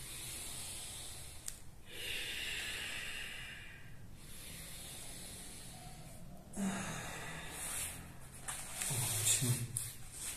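A man's deep yogic breathing: long breaths through the nose, the strongest about two to four seconds in. A low voiced exhale follows near the end.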